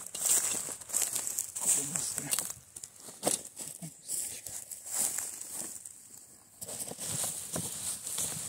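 Irregular rustling and crunching as a wheelbarrow is pushed and stepped over dry straw mulch, ending with a gloved hand digging into a load of wood-chip compost.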